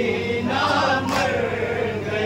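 Male voices chanting a noha, a Shia mourning lament, through a microphone and loudspeaker, the melody ending on a long held note.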